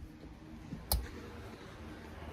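A single sharp click about a second in, over faint room hiss.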